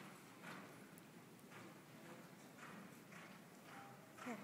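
Faint hoofbeats of a horse moving over sand arena footing, a stroke roughly every second.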